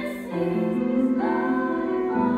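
Small middle-school vocal ensemble singing in harmony with grand piano accompaniment, holding sustained notes that change about a third of a second in and again a little past one second.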